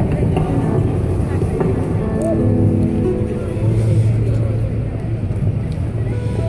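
Busy street ambience: a steady low rumble of traffic, with voices and a melody of held notes from music coming in about two seconds in.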